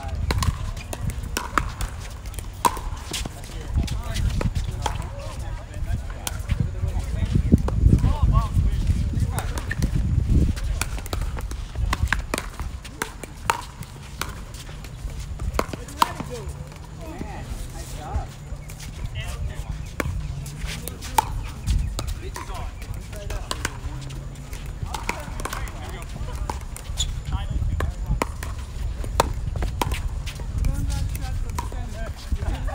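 Pickleball paddles hitting a hard plastic ball in doubles rallies on this and neighbouring courts: sharp pops at irregular intervals, with players' voices in the background.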